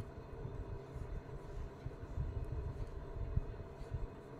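Knitting with metal needles and acrylic yarn, heard as soft irregular knocks and handling noise over a steady low rumble and faint hum.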